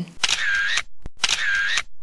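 Camera shutter sound effect, heard twice about a second apart, with a short click between the two.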